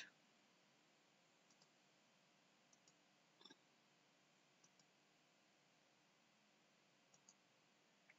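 Near silence with a few faint computer mouse clicks scattered through, each a short single tick.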